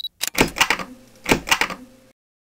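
Intro-logo sound effects: two quick clusters of sharp clicking hits, typewriter-like, with a faint steady tone under the second cluster.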